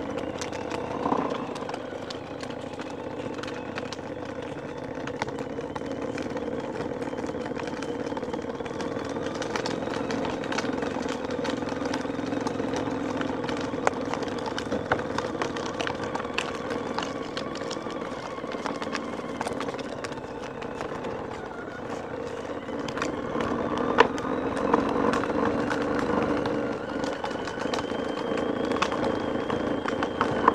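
Children's electric ride-on toy motorcycle running along asphalt: a steady motor hum that shifts in pitch as it speeds up and slows, with scattered small knocks and a swell in level near the end.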